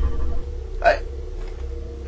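A single short, hesitant vocal syllable, the catch-of-breath start of a confused 'I...', about a second in, over a steady low hum.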